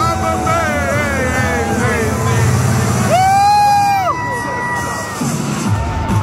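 Arena entrance music with a sung vocal over the PA, a crowd cheering underneath; a long held note comes about three seconds in.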